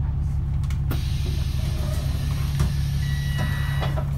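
VDL DB300 double-decker bus's diesel engine idling with a steady low hum. About a second in, a long hiss of compressed air starts and runs on as the doors work, with a thin steady tone near the end.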